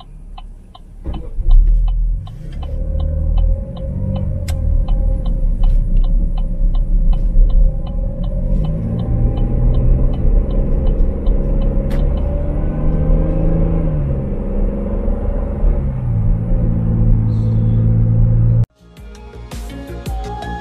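Car engine and road rumble heard from inside the cabin as the car pulls away from a traffic light and accelerates, with the engine note rising and shifting, and the turn signal ticking about twice a second for the first half. The sound cuts off near the end and gives way to music.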